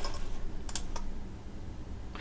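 Computer keyboard keystrokes, a few short taps typing into a text editor.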